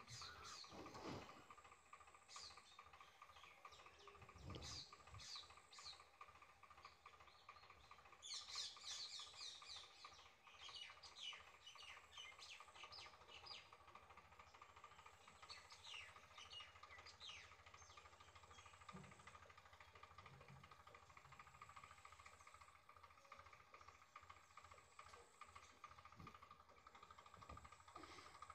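Near silence, with faint bird chirps now and then over a faint steady hum.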